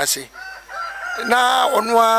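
Chickens calling in the poultry houses: faint calls at first, then a loud, long drawn-out call from a little past halfway.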